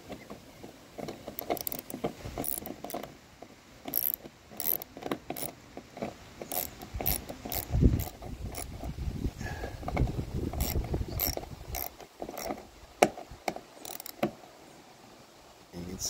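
Socket ratchet clicking in short irregular runs as 10 mm screws are snugged down into plastic windshield-trim clips, with a louder knock about eight seconds in.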